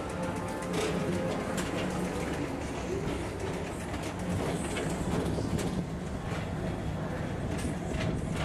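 Tomorrowland Transit Authority PeopleMover car running along its elevated track: a steady hum with repeated light clicks, with faint background music.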